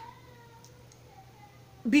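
A faint, drawn-out animal call in the background, about a second and a half long, drifting slightly down in pitch.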